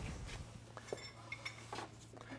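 Faint, light metallic clicks and clinks as a planter row unit's gauge wheel is worked by hand against the seed opening disc, over a steady low hum.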